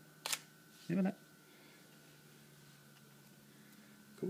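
Sony NEX-7 mirrorless camera's shutter firing once, a single sharp click, set off by a home-made Arduino infrared remote.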